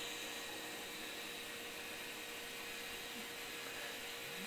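Faint, steady hum and whir from a running N-scale model train, whose sound car plays a GE AC4400 diesel sound file through a small 14x25 mm speaker.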